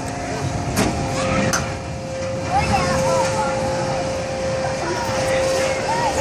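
Kiddie bounce-tower ride starting up: a steady mechanical tone from the ride grows stronger as the seats are lifted, with two sharp clicks in the first couple of seconds. Children's voices call out over it.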